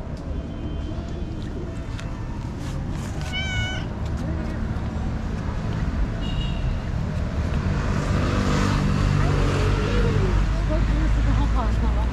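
Stray cats meowing several times: a short high call a few seconds in, another about halfway, and a run of sliding meows near the end.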